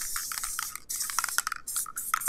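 Aerosol can of spray adhesive hissing, spraying in a run of uneven spurts with brief breaks between them.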